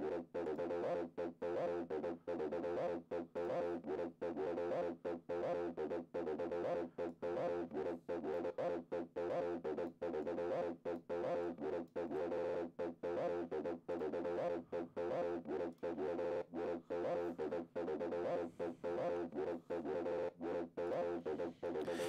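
Acid synth line playing back from a sequencer, a steady run of short repeated notes with brief gaps between them.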